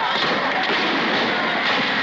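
Dense, steady street commotion with scattered shouting voices from a crowd, heard on an old, muffled film soundtrack.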